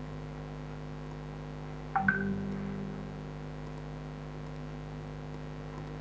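Steady electrical mains hum, with a sharp click and a short pitched tone that fades over about a second, about two seconds in.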